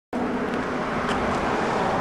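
Steady road traffic noise: a vehicle running on the street, an even rush with a faint low hum.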